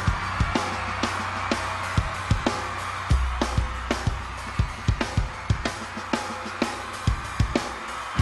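Rock band playing live: a drum kit struck in a busy pattern of hits over bass and electric guitar. The low bass drops out for a moment near the end.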